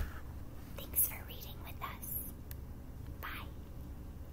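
A woman whispering a few short phrases.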